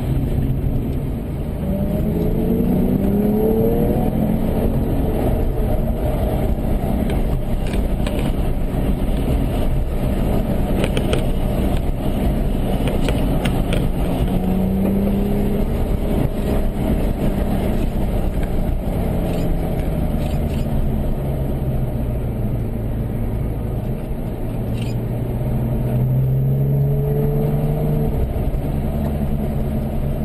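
Porsche engine heard from inside the cabin at parade pace, running steadily at moderate revs and rising in pitch a few times as the car accelerates.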